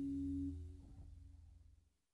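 The last held chord of a jazz guitar recording ringing, dropping away sharply about half a second in and fading to nothing by the end.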